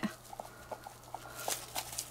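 Faint, irregular ticks and light scraping of a thin stir stick against a silicone mixing cup as glitter is stirred into epoxy resin.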